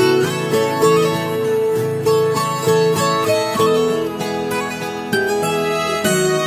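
Sertanejo band playing an instrumental passage: plucked acoustic strings carry a melody of ringing notes over sustained lower notes, with no singing.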